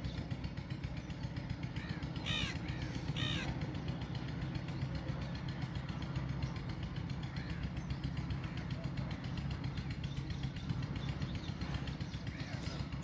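Faint steady low background hum, with two short high-pitched calls a little after two and three seconds in.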